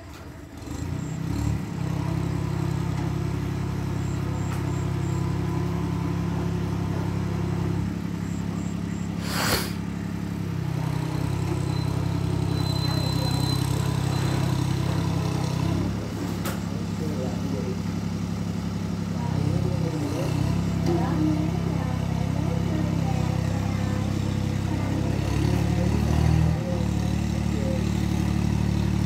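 Iseki TS2810 diesel tractor engine running steadily under load as it pulls through a flooded rice paddy, growing louder about a second in. There is one brief sharp knock about a third of the way through.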